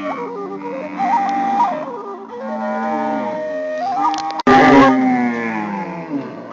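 Intro music: a flute melody moving in stepped pitches over a held low tone, with a sudden louder passage about four and a half seconds in.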